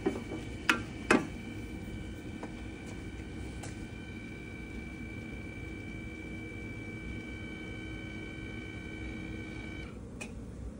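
Electric motor of a powered hitch cargo carrier running steadily with a whine as it lowers its load, cutting off just before the end. Three sharp clicks in the first second or so.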